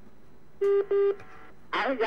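Two short electronic beeps on a telephone line, each about a quarter second long, close together on one steady tone.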